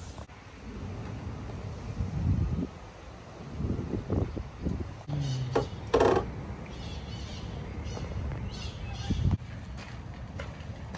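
Small green parakeets calling in an aviary: one louder sharp call about six seconds in, then a run of brief high chirps, over a steady low background rumble.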